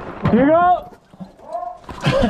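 A man's wordless, drawn-out vocal exclamation, its pitch rising then falling, followed by a shorter, quieter second one.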